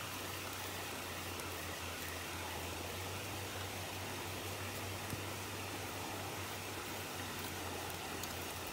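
Steady outdoor background hiss with a low hum underneath, with one faint click about five seconds in.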